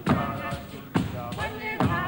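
Drum beats in a steady rhythm, a strong beat about once a second with lighter strokes between, under voices singing or chanting, accompanying a dance.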